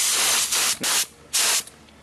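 Gravity-feed HVLP spray gun spraying acetone in three short spurts of air and mist, the first about a second long and the next two briefer, with the fan control closed down so each spurt lays a round spot.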